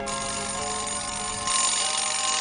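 A bell ringing steadily with a bright, high ring, like an alarm clock bell, growing louder near the end.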